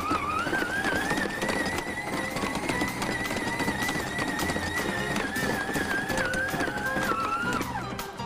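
Electric stand mixer motor running with a steady, slightly wavering whine as its hook kneads a stiff pastry dough, then stopping shortly before the end.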